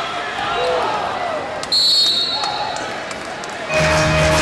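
Basketball game court sound: a ball bouncing and players' voices calling out, cut by one short, shrill referee's whistle blast a little under two seconds in. Music starts right at the end.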